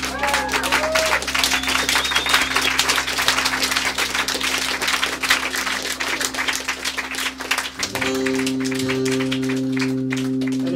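Audience applause for about eight seconds over a steady, sustained guitar drone. Near the end the clapping dies away and the drone shifts to a new ringing chord.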